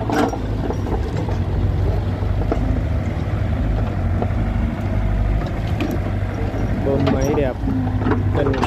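Mitsubishi MM35 mini excavator's diesel engine running steadily under digging load while the bucket works a heap of soil, with a few short knocks.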